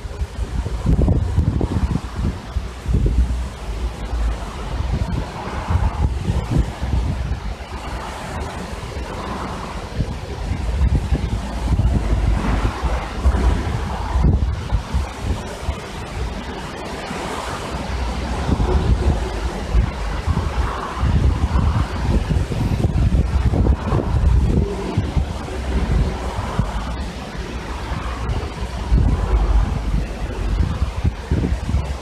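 Gusty wind buffeting the microphone in surges every second or two, over a steady rushing hiss of wind through trees and grass.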